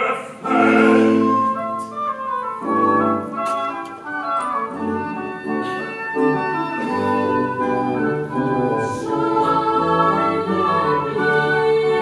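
Boys' and mixed choir singing with a baroque orchestra of strings, oboes and harpsichord continuo: a held chord for the first two seconds or so, then the parts move on in short notes.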